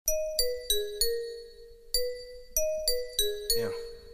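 Instrumental intro of a hip hop beat: a bell-like chime melody of struck, decaying notes, a short four-note phrase that falls and then rises slightly, played twice. Other layers of the beat begin to come in near the end.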